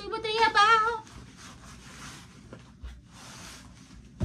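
A woman's voice sounding a short wavering note in the first second, then soft rustling with a small click and a low knock as footwear and clothing are handled.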